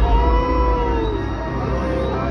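Arena dinosaur-show audio: music over a deep, steady rumble, with one long pitched cry that starts at once, rises a little, then falls and fades after about a second.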